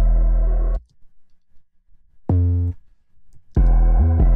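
Distorted 808 sub-bass from a sampler holding a loud low note that cuts off a little under a second in. A single short 808 note sounds near the middle, and the sustained bass pattern starts again near the end.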